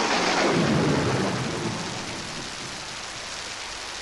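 Breakdown in a jungle track: a sampled thunderclap rolls away, falling in pitch and fading over about two seconds into a steady rain-like hiss, with no drums.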